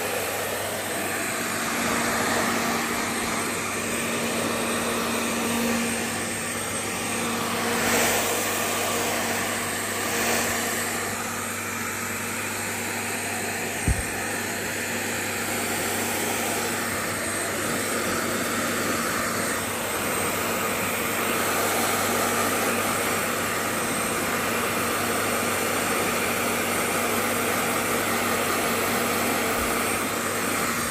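Hand-held hair dryer running steadily, a motor hum with rushing air, blowing on a puppy's wet fur. A short knock about fourteen seconds in.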